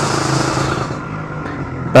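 Yamaha RXZ's two-stroke single-cylinder engine running steadily at low speed while riding, with a hiss over it that fades about halfway through.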